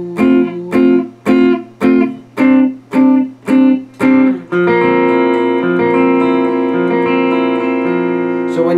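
Electric guitar strumming block chords, not arpeggiated, in eight short, choppy strokes about two a second, then one chord struck and left to ring for the last few seconds.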